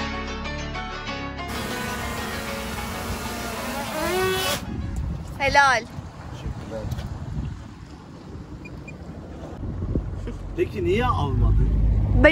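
Background guitar music for the first few seconds, then the low, steady rumble of wind and a small motorboat under way at sea, growing louder near the end, with brief voices over it.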